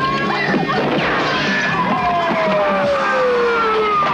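Film trailer soundtrack: dramatic music mixed with crash and impact sound effects, and a long falling tone through the second half.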